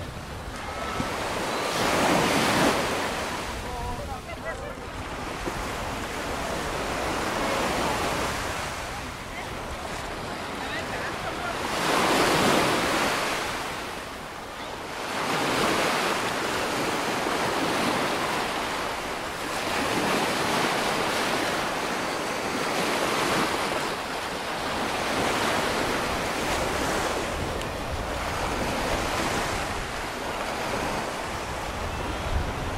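Small ocean surf breaking and washing up a sandy beach: a steady hiss that swells with each wave every three to five seconds.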